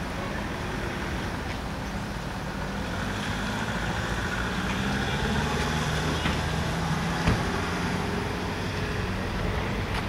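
A road vehicle's engine running nearby as a steady low hum, growing louder through the middle and easing off near the end. There is a single sharp click about seven seconds in.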